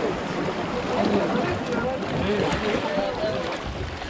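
Indistinct talk from people close by, over a steady background hiss of wind and sea.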